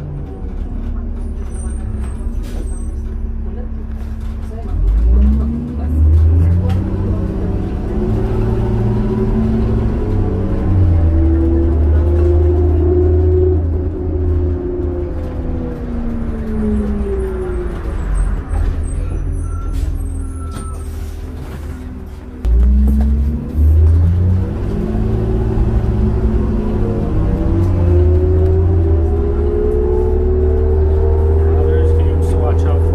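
Interior sound of a 2002 New Flyer D40LF diesel transit bus. The engine and drivetrain rumble with a whine that rises in pitch as the bus pulls away and accelerates, levels off, and falls as it slows. It pulls away and climbs in pitch again about two-thirds of the way through.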